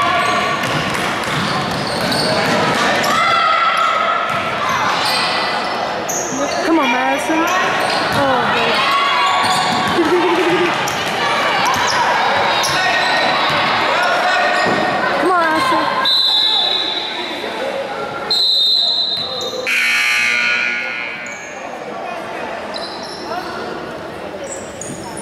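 Gym crowd and players shouting during a basketball game, with a ball dribbling on the hardwood floor. Two short, high referee whistle blasts sound about two-thirds of the way in, after which the noise drops.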